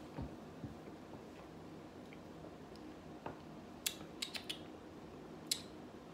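Faint mouth clicks and lip smacks of people tasting a sip of soda: a handful of small sharp clicks, mostly in the second half, over a steady low room hum.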